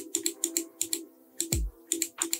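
Quick run of sharp computer clicks, about five a second, over faint steady background music, with a single low falling thump about one and a half seconds in.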